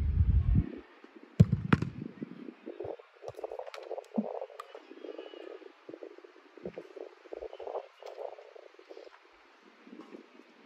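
A football struck hard: a sharp thud about one and a half seconds in, followed a moment later by a second knock. An irregular low rumbling runs under the rest.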